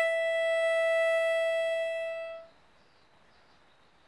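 Harmonica holding one long, steady note that fades out a little past halfway, followed by near silence.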